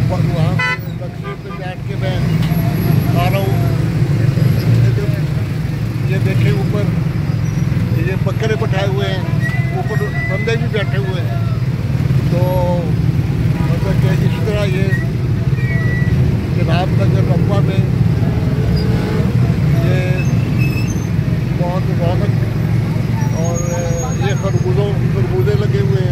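Motorcycle engine running steadily at low speed through busy street traffic, with people's voices around it and a couple of short horn toots.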